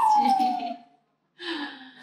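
The soundtrack of the video clip on the room's screen ends with a loud, high drawn-out cry that slides down in pitch and fades out within the first second. After a moment of silence, a softer low voice-like sound follows near the end.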